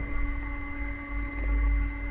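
A steady low electrical hum with a faint steady whine above it, picked up by the microphone in a pause between spoken phrases.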